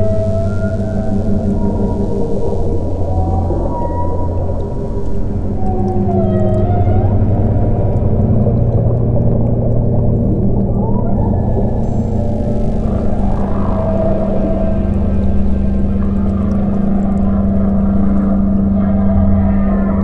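Ambient meditation music of sustained low synthesizer drones, with whale calls gliding up and down in pitch over them.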